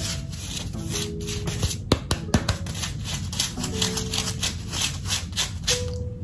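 Fingernails scratching over a hardened, dried coating painted onto a wig cap over the hair: a run of crisp, crackly scratches. This crunchy sound is the sign that the coating has dried fully.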